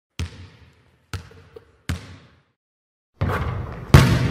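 A basketball bouncing three times on a hardwood floor, each bounce sharp with a short ringing tail. After a pause, a denser sound starts about three seconds in and ends in a loud hit near the end.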